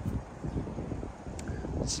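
Wind buffeting the microphone: an uneven low rumble that flutters and rises and falls. A speaker's voice starts just before the end.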